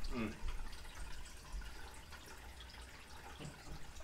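A brief 'mm' from a man at the start, then quiet room tone with a faint steady low hum.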